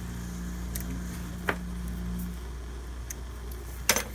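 Steady low electrical-sounding hum with a few small sharp clicks of a hand instrument against a stone dental cast as a wax bite rim is trimmed, and a sharper knock near the end as the cast is set down on the bench.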